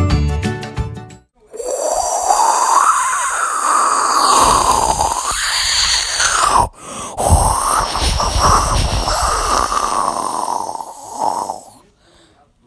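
A whooshing rocket-engine sound for a toy Lego spaceship in flight. It swells and sweeps up and down in pitch, breaks off briefly about two-thirds of the way through, then resumes and fades near the end. A short chiming music sting ends about a second in, before the whoosh starts.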